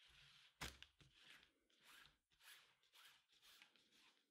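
Near silence, with faint rustles of paracord being handled and threaded, and one soft tap about half a second in.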